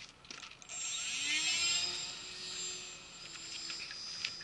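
Electric motor and propeller of a hand-launched Bixler RC plane spinning up with a whine that rises in pitch about a second in, then running steadily and fading slightly as the plane flies off.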